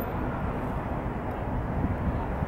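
Steady low rumble of city traffic.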